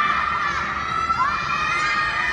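A group of children shouting together, several high voices held long and sliding in pitch.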